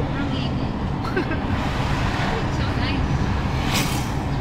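Steady low rumble of road and engine noise from inside a moving vehicle, with faint voices talking underneath.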